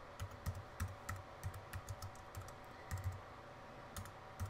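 Faint typing on a computer keyboard: about a dozen quick keystrokes at three or four a second, typing a folder name, with a short pause near the end.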